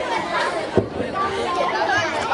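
Several people talking at once, indistinct chatter, with a single brief knock a little under a second in.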